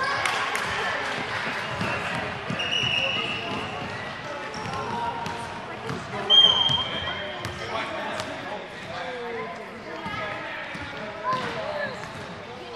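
A basketball bouncing on a hardwood gym floor among the voices of children and spectators in a large hall. Two short high squeals come through, about three seconds in and again, loudest, about six and a half seconds in.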